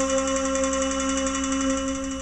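Tenor saxophone holding one long final note with an even, pulsing waver.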